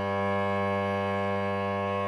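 Cello bowed on one long, steady held note.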